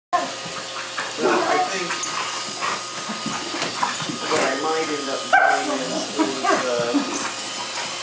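Two dogs play-fighting, making dog noises throughout, with a sharp bark about five seconds in. A faint steady hum from a Roomba robot vacuum runs underneath.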